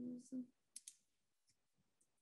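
Computer-mouse clicks while working a PowerPoint slideshow menu: two quick sharp clicks a little under a second in, and a fainter one around a second and a half. The loudest sound is a brief murmured vocal sound at the very start.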